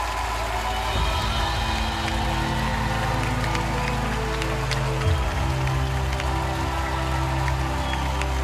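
Applause from the coaches and studio audience over a soft music bed of long held low chords that change about a second in and again about five seconds in.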